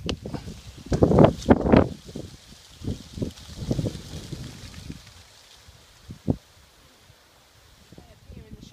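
Wind buffeting the microphone in irregular gusts, loudest about a second in, with a faint rustle of leaves. A single short thump comes late on.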